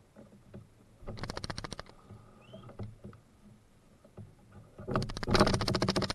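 Paddle strokes in creek water: a short burst of splashing and dripping about a second in, then a louder, longer one near the end.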